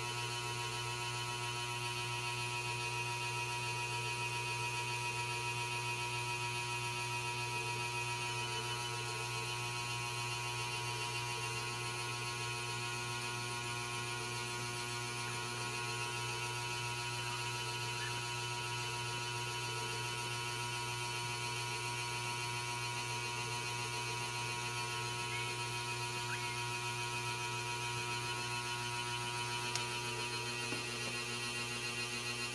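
A steady electrical hum made of many fixed tones, unchanging in level.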